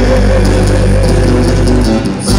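Live band playing with guitars, bass guitar and a large drum, with a singer's wavering held note fading out about half a second in over steady bass notes.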